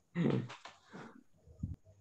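Soft laughter over a video call: a short burst just after the start, then fainter chuckles that trail off.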